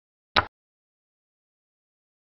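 One short click about a third of a second in: a xiangqi program's piece-move sound effect as a chariot is placed on its new point.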